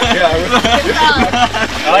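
Men's voices laughing and chattering.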